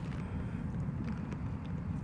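Low, steady background rumble with no distinct events.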